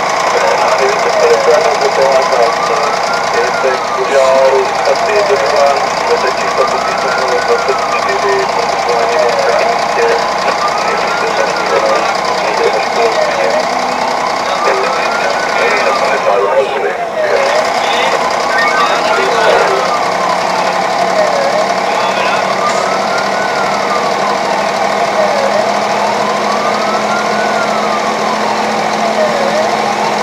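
Fire engine's wailing siren, rising and falling slowly, about one full cycle every four seconds, over the truck's engine running as it drives, heard from inside the cab.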